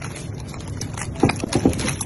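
Handling noise from hands working inside a wooden speaker box, pulling out a plastic-wrapped package: a cluster of sharp knocks and rustles in the second half, over a steady low hum.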